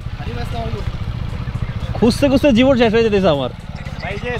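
Motorcycle engine running at low revs, a steady low pulsing as the bike rolls slowly and comes to a stop; a man's voice speaks over it about halfway through.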